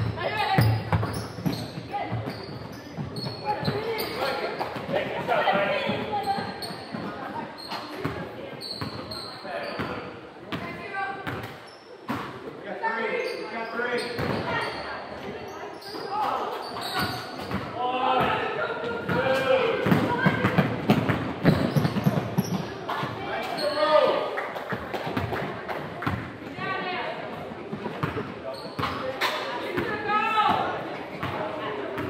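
Basketball bouncing on a hardwood gym floor, with short knocks scattered throughout, over the voices of players and spectators calling out and talking, echoing in a large indoor gym.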